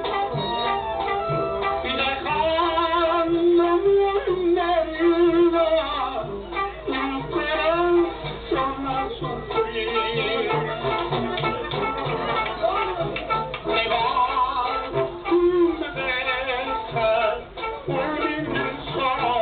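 Live Mexican ranchera music from a small band with guitar and tuba, a melody with vibrato over a steady accompaniment.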